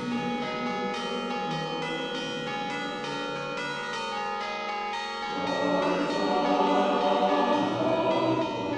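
Church bells ringing in quick, regular strikes, joined about five seconds in by louder, fuller music.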